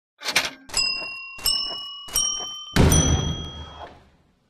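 Channel intro sting: a short swish, then three bright pitched hits about 0.7 s apart, each a little higher than the last, then a louder, fuller hit that rings and fades away.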